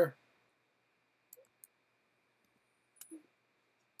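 A few faint clicks at a computer while a formula is pasted into a spreadsheet cell: two small clicks about a second and a half in, then a sharper one at about three seconds.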